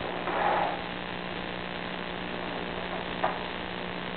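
Steady electrical hum under a hiss of static from a sewer inspection camera system's audio. There is a brief rushing swell about half a second in and a short click a little after three seconds.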